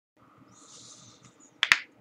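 Faint rustling, then a single sharp, loud snap made of two quick clicks close together, about three-quarters of the way in.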